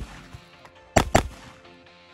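Shotgun fired with a chain-shot shell: two sharp bangs about a fifth of a second apart, about a second in, over background music.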